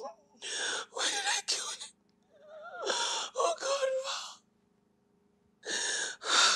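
A woman crying and wailing in three bursts of wavering, sobbing voice with gasps between them, over a steady low hum.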